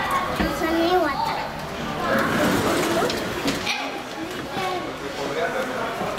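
Indistinct speech of people talking nearby, with no clear words.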